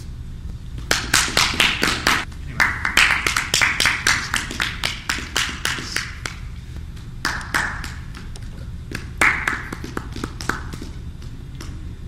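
Audience applauding: irregular claps start about a second in, are densest over the next few seconds and thin out after about seven seconds.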